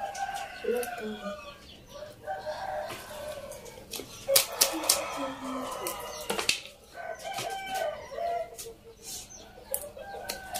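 Chickens clucking with a rooster crowing, and small clicks and snaps of greens being picked over by hand.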